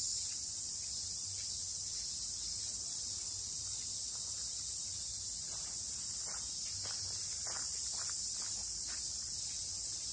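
A steady, high-pitched chorus of insects shrilling without a break, with faint footsteps in the second half.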